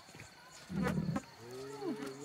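Dromedary camels vocalizing while mating: a loud, low, rough burst about a second in, followed by drawn-out wavering calls that bend in pitch.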